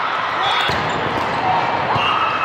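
Volleyball being struck with hands and forearms during a rally, over the steady chatter of a crowd in a large, echoing hall.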